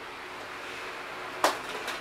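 Quiet room tone, then a single sharp click about one and a half seconds in, followed by a couple of faint ticks: a smartphone being handled and picked up off a table.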